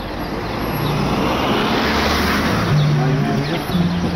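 A car driving past close by on the street, its tyre and engine noise swelling to a peak about halfway through and then fading, over general traffic noise.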